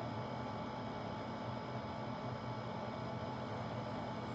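Steady room noise: a low, even hum with hiss and no distinct events.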